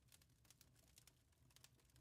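Near silence, with only very faint, scattered clicks.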